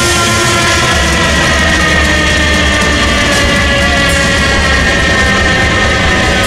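Loud, distorted garage-rock band music with heavy bass and a long held high tone that sags slightly in pitch.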